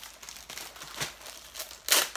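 Packaging crinkling in short rustling bursts as the next item is taken out and handled, loudest just before the end.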